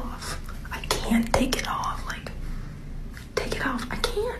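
A woman's voice, mostly whispered, with a few short voiced sounds.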